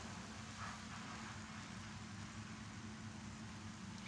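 Faint, steady hiss from a frying pan of stir-fried bitter gourd on a gas stove, with a low steady hum beneath.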